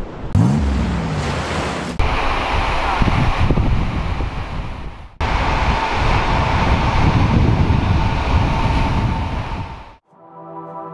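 Ocean surf breaking and washing in, with wind buffeting the microphone. A steady rush of noise that changes abruptly twice, at about two and five seconds in.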